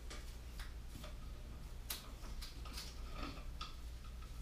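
Faint, irregular small clicks and ticks of hands working the old light fixture's wiring, twisting plastic wire nuts off the wire splices.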